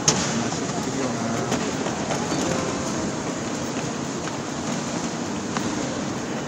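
Steady outdoor urban background noise, an even wash without a clear single source, with one sharp click just after the start.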